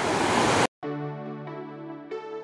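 A fast whitewater mountain stream rushing, cut off abruptly under a second in. Then background electronic music with sustained synthesizer notes.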